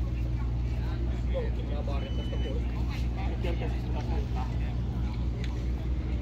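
Open-air market ambience: a steady low rumble with faint, indistinct voices of people nearby, and a short high beep about two seconds in.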